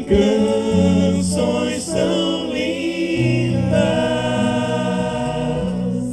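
Voices singing a church hymn together, with a lead voice on a microphone over sustained low accompaniment notes.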